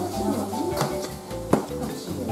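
Background music with a melody, over a few sharp clicks of a metal spoon against a ceramic plate; the loudest click comes about one and a half seconds in.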